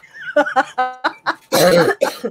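A woman laughing in short broken bursts, with a brief high squeal just before the middle and a loud breathy burst a little after it.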